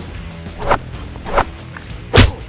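Two quick whooshing swishes of fight sound effects, about two-thirds of a second apart, over background music.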